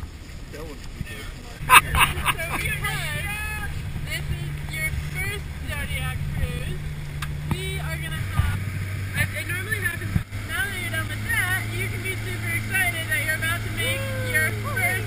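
60 hp outboard motor on an inflatable boat running steadily from about two seconds in, settling to a lower pitch about eight seconds in, with water rushing past and voices talking over it.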